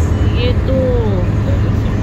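Steady low road rumble inside a car's cabin at highway speed, tyres and engine running under a woman's brief speech.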